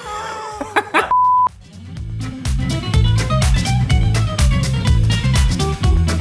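A short, steady edited-in beep tone lasting about half a second, coming just after brief voice sounds. About two seconds in, upbeat background music with a steady beat and a heavy bass line starts and carries on.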